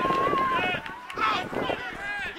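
Several voices shouting and calling at once across an open rugby field, the players' calls overlapping, with one drawn-out call at the start.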